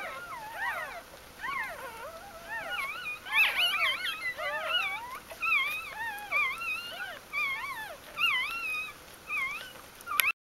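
Newborn Bichon Frisé puppies squeaking and whimpering: many short, wavering high cries overlapping one another, growing busier and louder about three seconds in.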